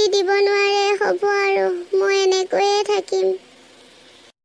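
A cartoon character's high-pitched voice singing a short tune in several held notes, breaking off about three seconds in.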